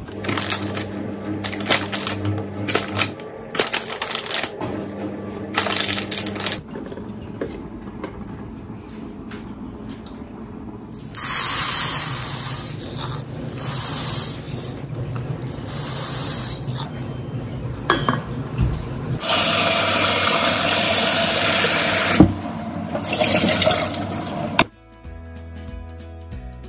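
Kitchen sounds: dried prunes tipped from a plastic bag into a pan, then dry rice poured into a pot, then a tap running water into the pot for about three seconds. Background music comes in near the end.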